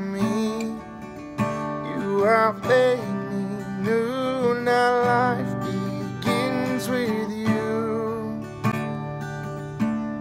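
A man singing a worship song while strumming an acoustic guitar, his voice holding long notes over the chords.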